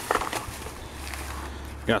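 Thin plastic shopping bag rustling and crinkling as a hand rummages inside it and lifts out a plastic spray bottle, over a low steady rumble.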